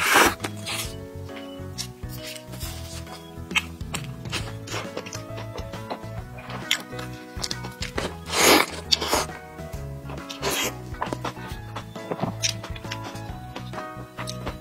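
Background music with held notes throughout, over close-up bites into a soft burger: a loud bite at the start, two more about eight and nine seconds in, and another a little later.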